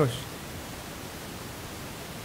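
Steady hiss of open studio microphones and room noise, with the last syllable of a man's voice trailing off at the very start.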